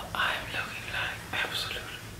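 A woman speaking softly, close to the microphone, in short whispered phrases.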